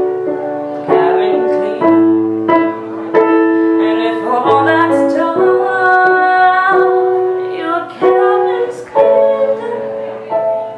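Piano keyboard playing an instrumental passage of sustained chords, a new chord struck about once a second.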